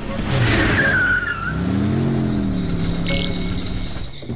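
Cartoon car sound effects: a tyre screech falling in pitch over the first second or so, then an engine revving up and easing back to steady running as the convertible drives past.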